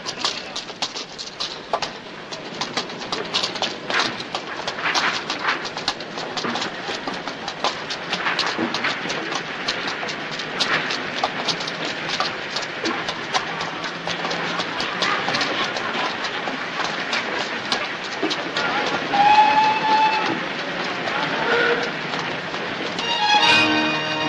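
Railway train at a station platform: a continuous clatter of wheels and carriages. A short, high whistle sounds about nineteen seconds in, and music comes in near the end.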